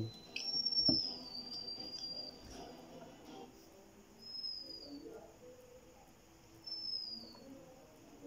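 High, thin chirping calls from a small animal, three in all, each a whistle gliding down in pitch, the first one long and the others short. A single sharp knock comes about a second in.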